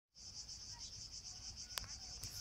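Cicadas singing: a steady high-pitched buzz that pulses evenly about seven times a second, with a single sharp click near the end.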